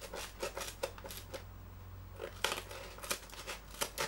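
Small scissors of an HX Outdoors EDC 020A knife-scissors tool snipping through corrugated cardboard: a run of quick, short snips, with a pause of about a second near the middle.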